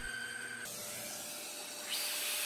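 Steady rushing hiss of a small handheld cordless vacuum with its nozzle at the bore of a cast cylinder in a lathe chuck, growing brighter and louder near the end.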